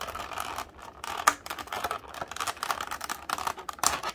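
Clear plastic blister tray being handled and pried at to free an accessory, giving irregular plastic clicks and crinkles, with a sharper click about a second in and another near the end.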